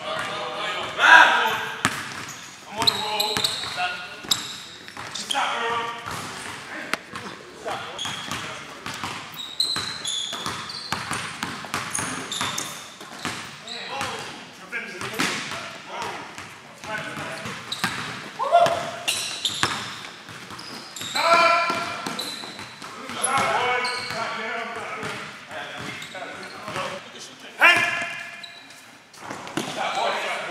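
Basketball bouncing on a hardwood gym floor during a pickup game, mixed with players' voices calling out, echoing in a large hall.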